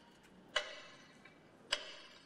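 Metronome beating out a minute of silence: two sharp ticks a little over a second apart, each with a short ringing tail.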